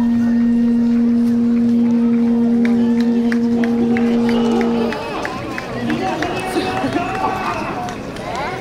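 A single long horn-like note held at one steady pitch, which cuts off about five seconds in; crowd voices follow.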